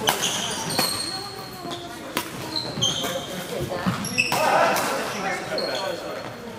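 Badminton rally: rackets striking the shuttlecock with sharp cracks every second or so, and sneakers squeaking in short high chirps on the wooden gym floor, with the echo of a large hall.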